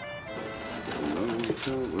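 Bagpipe music breaks off at the start. Then come the dry crackling and rustling of willow rods being worked into a basket, with low wavering coos like a pigeon's from about a second in.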